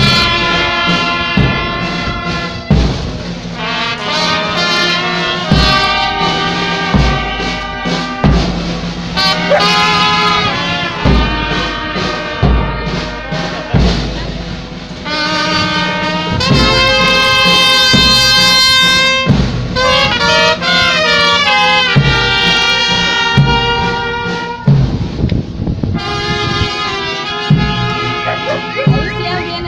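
Brass band with trumpets playing continuously for a procession, the held notes carried over recurring low drum beats.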